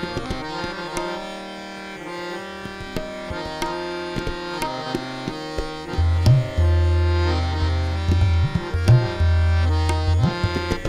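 Hindustani classical accompaniment in Raag Bhoop: tabla strokes over the held notes of a harmonium and tanpura drone. From about six seconds in, loud deep bayan (bass drum) strokes ring out with short pitch bends.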